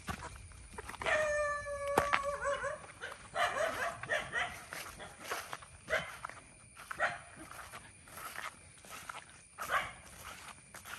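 A dog barking several times, starting with one long, drawn-out howl about a second in.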